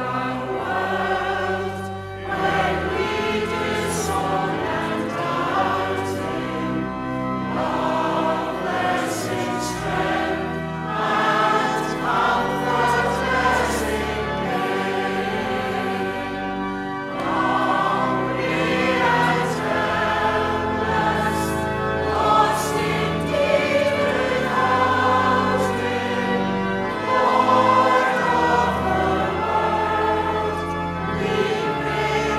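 Church congregation singing a hymn in unison and harmony, carried by organ accompaniment with held bass notes beneath the voices.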